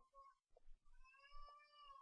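Faint, drawn-out high-pitched cry, starting about halfway in and lasting about a second, rising a little in pitch and then falling away.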